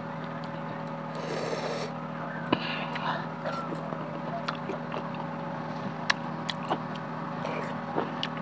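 Close-miked chewing of chili-dusted green mango slices: scattered short clicks and mouth smacks, with a brief rustle about a second and a half in. A steady low hum runs underneath.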